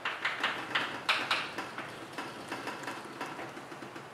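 Chalk writing on a blackboard: a run of short taps and scratches, about three a second, growing fainter toward the end.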